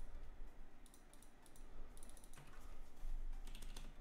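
Typing on a computer keyboard: short runs of quick key clicks with gaps between them.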